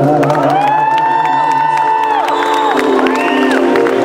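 Male pop singer holding a long high note into a handheld microphone over backing music, gliding into it about half a second in and releasing it past the middle, then a shorter note; the audience cheers and whoops.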